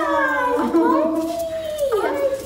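Miniature poodle whining and howling in long, high cries that slide down in pitch, excited at greeting its owner.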